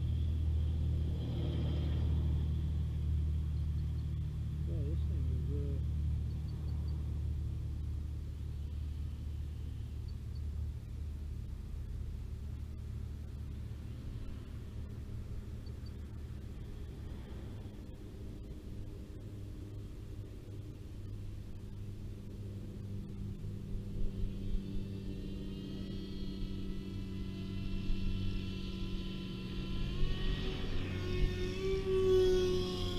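Steady low rumble throughout. From about 24 seconds in, the electric motor and propeller of a Ritewing Z3 RC flying wing spool up into a rising whine as it is throttled up on its launch dolly.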